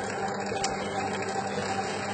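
Electric dough mixer running steadily, its hook kneading a sweet enriched dough in the bowl: a constant motor hum with a few steady tones.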